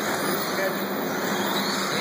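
Electric 1/10-scale 2wd RC buggies running on an indoor dirt track, heard as a steady noise with background voices.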